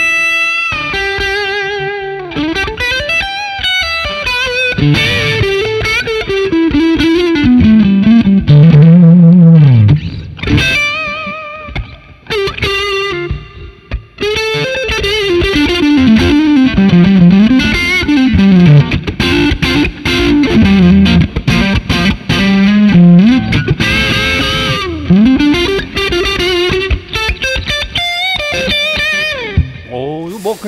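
Overdriven electric guitar, a Fender Stratocaster through a Wampler Pantheon Deluxe dual overdrive with both channels stacked into a Fender '65 Twin Reverb, playing a bluesy lead line full of string bends. It thins out briefly about twelve seconds in, then picks up again.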